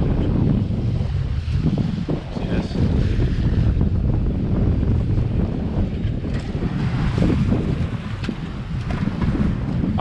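Strong wind buffeting the microphone in a steady low rumble, over the wash of choppy waves against a small fishing boat's hull.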